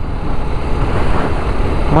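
Dafra Next 300 motorcycle at cruising speed, heard as a steady rush of wind and road noise with the engine running underneath.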